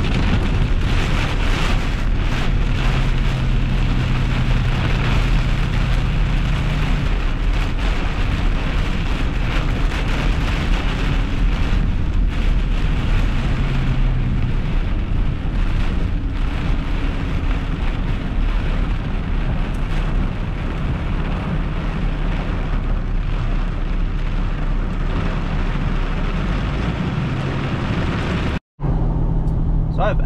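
Heavy rain on the windshield and roof of a moving pickup truck, heard from inside the cab, with the truck's engine and road noise as a steady drone beneath. It is steady and loud, and cuts off abruptly near the end.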